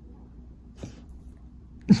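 A dog giving a soft, breathy huff on the 'whisper' cue: a quiet, muted bark rather than a full one. A faint huff comes about a second in and a sharper one near the end.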